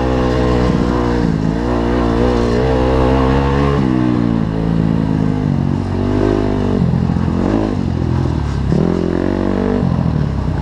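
Dirt bike engine running hard over rough ground, its revs rising and falling repeatedly as the throttle is worked, with a sudden drop in pitch several times.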